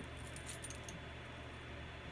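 Faint metallic jingling of metal bracelets as the wrists move, a few light clinks in the first second over a steady low hum.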